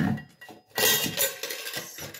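Steel dishes clattering in a stainless steel sink: a sharp clank at the start, then a longer metallic rattle and scrape as spoons and a plate are moved around a steel bowl.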